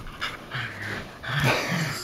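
Two puppies playing tug of war over a rope toy: two low growls of about half a second each, with panting breaths.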